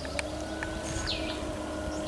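Outdoor ambience: a steady distant motor drone with a few short bird chirps, and one high descending bird call about a second in.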